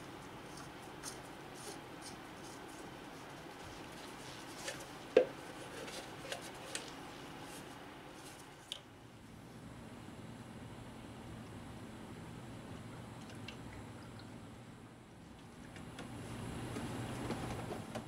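Light plastic clicks and handling noises as a plastic funnel and its green Honda adapter are fitted into the oil filler neck of a four-cylinder engine, with one sharp click about five seconds in. A soft rushing noise swells near the end.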